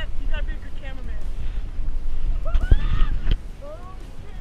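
Wind buffeting the microphone, a low steady rumble, with a sharp knock a little under three seconds in. A few short pitched calls, rising and falling, come near the start and again around the knock.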